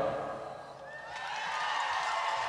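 A live rock band's last chord fading out at the end of a song, leaving a quieter room; faint voices start up about a second in.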